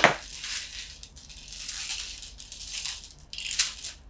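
Long strands of prayer beads being handled and draped around the neck: a sharp clack at the start, then irregular rattling and clicking of beads knocking together.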